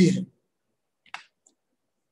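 A man's voice trails off at the start, then a single short computer-mouse click about a second in, advancing the presentation slide.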